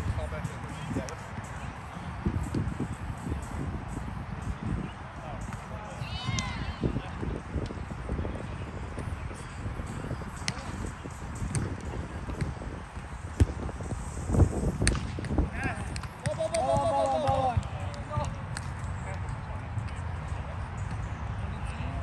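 Outdoor grass volleyball rally: a few sharp slaps of hands on the ball, the loudest a little past the middle, and a brief shouted call from a player soon after, over a steady low rumble.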